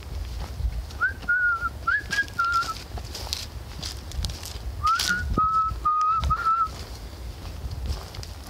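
A person whistling two short tunes a few seconds apart, each of four clear notes that start with a little upward slide, with footsteps crunching on dry leaf litter underneath.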